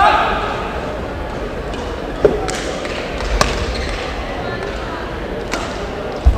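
Badminton rally: a handful of sharp racket-on-shuttlecock hits, irregularly spaced, over players' footwork on the court floor in a large, echoing sports hall.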